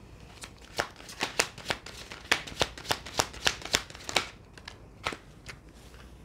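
A deck of oracle cards shuffled by hand: a quick run of sharp card slaps, about three a second, that stops about four seconds in, followed by a few lighter taps.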